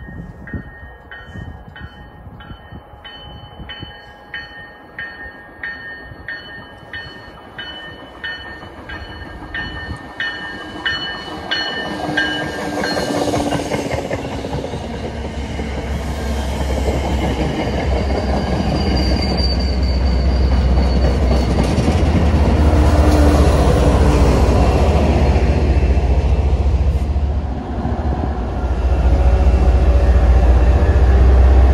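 MBTA commuter rail train pulling in. First an even ringing about twice a second grows louder as the train approaches. Then the passing coaches build to a loud, heavy rumble of wheels on rails and diesel locomotive.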